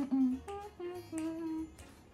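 A woman humming a tune in short held notes, a few notes a second, over background music with a plucked guitar.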